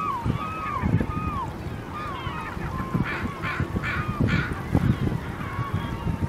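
A flock of gulls calling: many short, downward-sliding cries overlapping one another, with four harsher calls in quick succession about halfway through. An uneven low rumble runs underneath.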